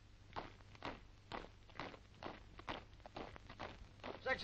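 Soldiers' boots marching on a parade square, a faint, steady tread of about two steps a second as a section advances in step.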